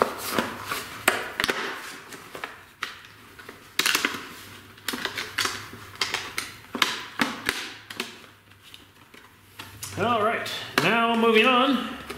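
Clear rigid plastic blister packaging of a hand wire stripper crackling and clicking as it is handled, in irregular sharp clicks. A voice comes in near the end.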